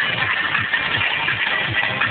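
Loud electronic dance music played over a PA system and recorded distorted, driven by a steady low thumping kick-drum beat.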